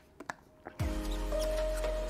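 A few faint clicks of sipping and swallowing from a water bottle in a near-silent gap, then steady background music with held tones comes back in just under a second in.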